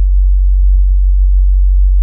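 Loud, steady electrical hum on the sound track: one deep, unwavering tone, typical of mains hum leaking into the broadcast audio chain.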